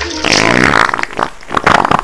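Comic fart sound, a raspy buzz lasting about a second, as a man strains to lift two full buckets of water, followed by a few sharp clicks near the end.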